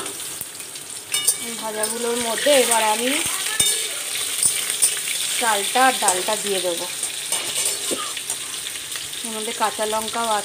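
Pumpkin and potato chunks sizzling in hot oil in a steel wok, with a steady hiss, while a metal spatula stirs them and clicks and scrapes against the pan a few times.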